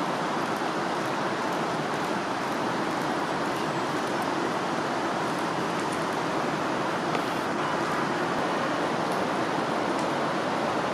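Steady rushing of a fast-flowing river, an even noise that holds without a break.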